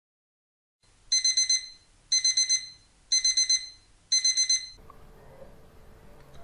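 Electronic alarm-clock beeping: four bursts of rapid high-pitched beeps, about one burst a second, marking the end of a quiz countdown timer.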